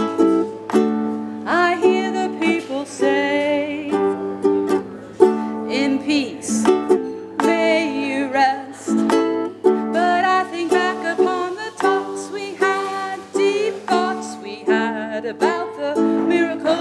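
A woman singing with vibrato while strumming chords on a ukulele.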